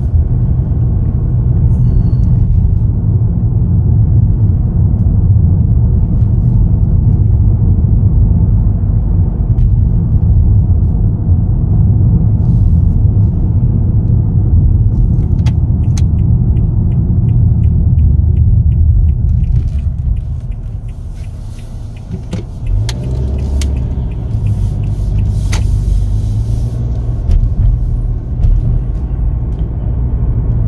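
Steady low road and tyre rumble inside the cabin of a 2020 Nissan Altima S driving at about 25 to 30 mph, with the engine itself barely heard. The rumble eases for a moment about two-thirds of the way through, then comes back.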